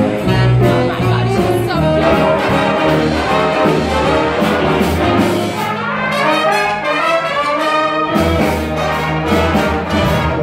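A live jazz big band playing swing music, with trumpets and trombones carrying the tune over a steady walking bass line.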